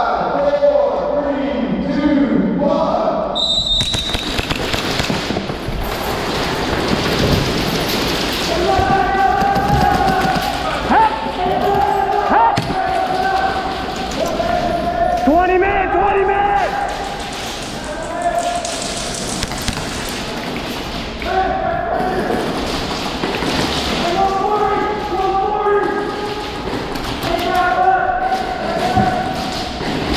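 A short high beep about three and a half seconds in, then the dense din of an indoor airsoft match in play: thuds and sharp impacts of players running and firing on a concrete floor among barricades, with players shouting over it.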